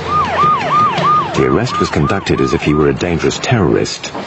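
A siren yelping in fast rising-and-falling cycles, about three or four a second, that stops a little under three seconds in.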